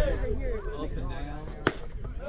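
Voices chattering and calling across a baseball field, with one sharp crack about a second and a half in: the impact of a pitched baseball.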